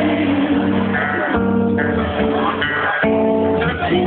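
Acoustic guitar strummed live on stage with a bass underneath, chords changing about every second and a half; the recording sounds thin, with no top end.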